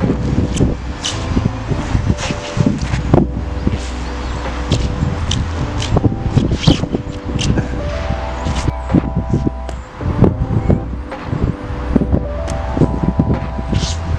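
Background music with sustained bass notes that change in steps, chord-like tones and sharp beats.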